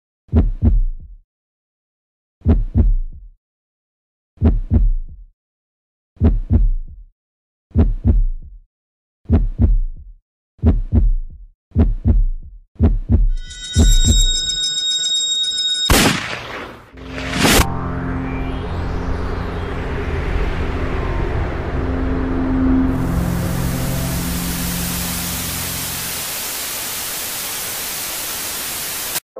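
Heartbeat sound effect: low double thumps about every two seconds that speed up, then a high ringing tone, two sharp hits, and a low droning bed that fills with a rising static hiss over the last few seconds.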